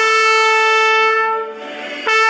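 Trumpet holding one long note, which fades about a second and a half in.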